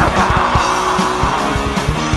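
A heavy metal band playing live: heavily distorted electric guitar over rapid drumming, with no vocals.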